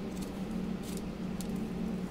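A few soft, short handling noises, about three, as small pieces of polymer clay are set down and shifted on a sheet of paper, over a steady low background hum.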